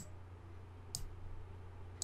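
Two computer mouse clicks about a second apart, over a faint steady low hum.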